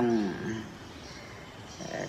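A man speaking Khmer, his voice trailing off on a long falling word, then about a second of pause with faint steady background hiss before he speaks again near the end.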